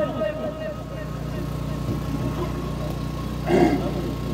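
Steady low hum of an engine running at idle, with a faint steady tone over it; a short burst of a voice comes in near the end.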